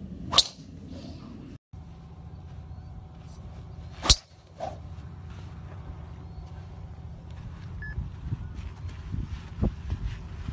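Two golf driver strikes, the clubhead cracking into the ball on full-speed long-drive swings. The sharp impacts come about four seconds apart, the second one louder.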